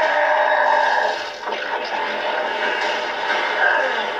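Soundtrack of an animated superhero fight, sustained sound effects and score, heard through a TV speaker. It is steady for about a second, dips with a few rising sweeps, then holds steady again.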